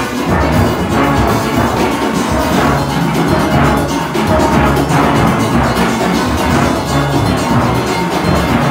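A steel orchestra playing, with a nine-bass steelpan's deep notes up front, struck in quick succession with rubber-tipped mallets over the band's higher pans.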